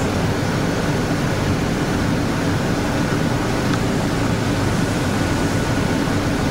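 Steady machine hum and hiss with a faint high tone held through it, even in level throughout.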